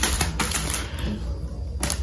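Plastic packaging and plastic bottles being handled on a hard counter: a few light clicks and taps, one soon after the start and another just before the end.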